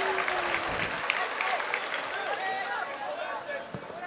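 Pitch-side sound of a live football match: scattered shouts and calls from players and spectators, with a few claps over the general noise of the ground.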